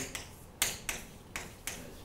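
Chalk tapping and scraping on a chalkboard in about five short strokes, spread across two seconds, as figures are written.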